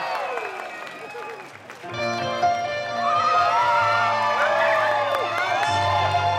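Concert crowd cheering and whistling. About two seconds in, a keyboard starts the band's slow song intro with sustained chords over a low note, and the whistles carry on above it.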